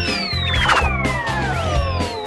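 Upbeat intro jingle with a steady beat and bass line, over which long whistle-like glides sweep downward in pitch, one starting at the outset and a second near the end.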